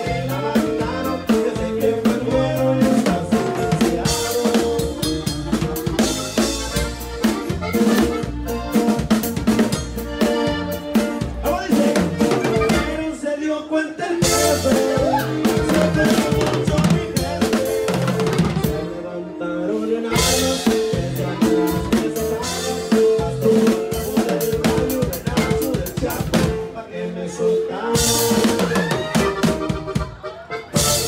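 Live norteño band music with the drum kit loud and close: steady snare, bass drum and cymbal strokes over guitars and bass. The low end drops out briefly twice, about 13 and 19 seconds in.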